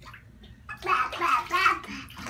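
A baby in a bath babbling: a wavering, high-pitched wordless voice that starts just under a second in. Light sloshing of bathwater runs under it.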